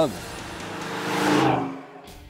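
A 1969 Camaro Z28's 302 small-block V8 driving past. It swells to its loudest about two-thirds of the way through, then falls away quickly near the end.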